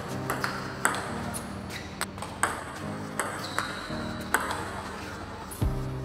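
Table tennis ball being struck back and forth in a short rally, with sharp ticks of ball on bat and table every half second to a second. A backspin push is being returned off a long-pimpled rubber. Background music plays under it.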